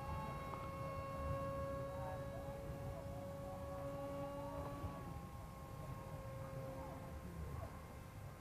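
Turnigy 2200KV brushless electric motor and propeller of a small foam RC parkjet in flight, a steady high whine with overtones that eases slightly about halfway, with low wind rumble on the microphone.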